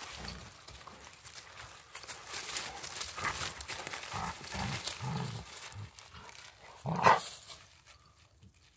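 Two Rottweilers play-growling in short low rumbles while they tug at a stick between them, with one loud outburst about seven seconds in. Leaves and twigs crackle under their feet and the stick.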